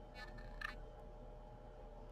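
Faint, brief scrape ending in a small click, from hands handling a wooden round knitting loom and its knitted yarn fabric, over a steady low hum.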